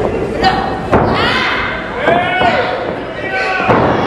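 Wrestling ring mat taking body impacts: a sharp slam about a second in and another near the end, with a shouting voice between them.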